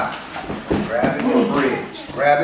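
Indistinct voices of people talking in a gym, with a couple of short knocks about two-thirds and three-quarters of a second apart.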